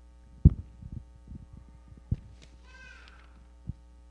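Steady electrical mains hum from a microphone and PA system, broken by several dull thumps, the loudest about half a second in, others around one and two seconds and one near the end: handling noise on a handheld microphone as the hands move over papers on the pulpit.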